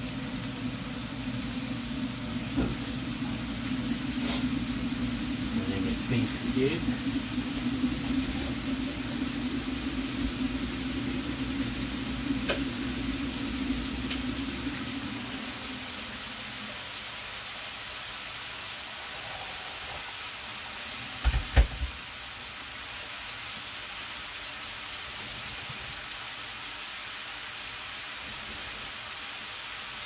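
Minced beef, onion and red pepper sizzling steadily in a frying pan, with a low hum under it through the first half that dies away about halfway through. About two-thirds of the way in come two sharp knocks close together, the loudest sounds here.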